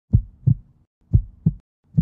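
Heartbeat sound effect: pairs of short, low thumps, lub-dub, repeating about once a second.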